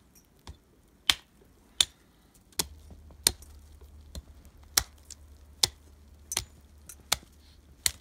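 Hatchet chopping into a tree trunk: about eleven sharp strikes at a steady pace, a little quicker than one a second.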